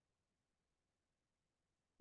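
Near silence: a pause with no audible sound, only a faint noise floor.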